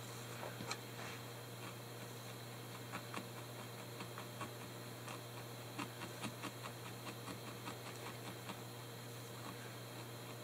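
Felting needle repeatedly stabbing wool roving down into a bristle brush mat, making a run of soft, irregular ticks, over a steady low hum.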